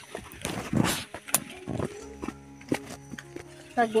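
Footsteps and brushing through leafy undergrowth on a forest path: a loud rustle about half a second to a second in, then scattered snaps and clicks of twigs and leaves. Steady background music runs underneath.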